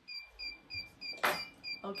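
Electronic timer beeping from a heat press for sublimating mugs, short high beeps at about four a second, signalling that the pressing cycle is finished. A sharp click about a second and a quarter in.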